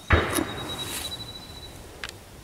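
A single sharp knock, then soft rustling handling noise that fades away, as a hand-sized stone is lifted off a vehicle's painted metal sill and turned over in the hand.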